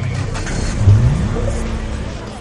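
A news programme's title-sequence sting: loud music and sound effects over a deep rumble, with a rising swoop about a second in that levels off into a held tone.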